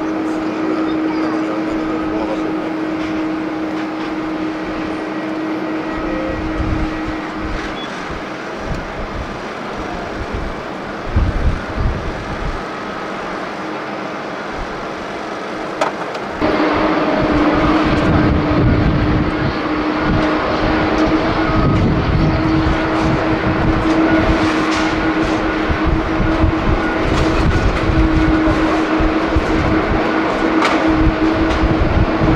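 Jet airliner engines: a steady drone with a held tone as a Japan Airlines Airbus A350 climbs away after takeoff. About 16 seconds in, the sound jumps abruptly louder and stays loud, with a heavy low rumble under the continuing tone.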